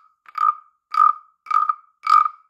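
Wooden frog rasp (a carved frog guiro) croaking as its wooden stick is scraped along the ridges on its back: three short, ribbit-like rasps about half a second apart.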